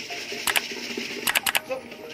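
A few sharp clicks or taps over a faint hiss: one about half a second in, then three in quick succession a little past one second. A steady whistle starts just before the end.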